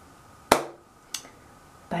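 A single sharp, loud knock-like impact about half a second in, followed by a fainter click a little after a second.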